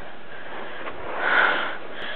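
A short sniff close to the microphone, a little past a second in, over a steady low hiss.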